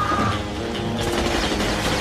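Orchestral action film score over a dense, continuous clatter of automatic gunfire in a battle scene.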